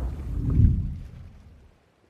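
Cinematic logo-reveal sound effect: a deep low boom about half a second in that dies away to nothing within the next second.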